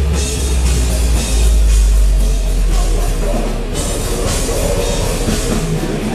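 A live deathcore/metal band playing loud. A deep, heavy low note rings out for roughly the first three and a half seconds, then drums and cymbals come back in with the full band.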